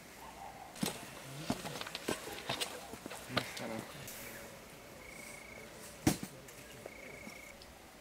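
Scattered knocks and clicks of handling and movement, with faint voices in the background; a sharp click about six seconds in is the loudest sound. In the second half come two short, even, high trills of an insect.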